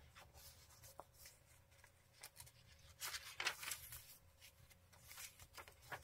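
Faint rustling of paper journal pages being handled and turned, with a louder rustle about three seconds in.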